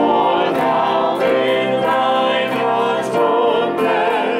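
Hymn sung by a choir and congregation, led by a solo voice, with pipe organ accompaniment; voices and organ hold long, steady notes.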